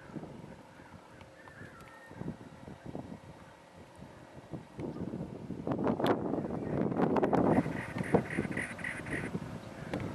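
Cactus wren singing its harsh, chugging song: a quick run of about nine rasping notes, a little under two seconds long, near the end. Under it is wind and handling rumble on the microphone, loudest in the middle.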